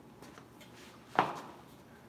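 A single sharp knock or slap about a second in, over quiet gym room tone.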